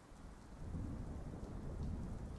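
Low rumble of distant thunder that swells up over the first half second or so and then rolls on steadily.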